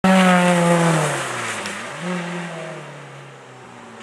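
Rally car engine at speed going by and pulling away: loud at first with its pitch falling, a short burst of revs about two seconds in, then fading out.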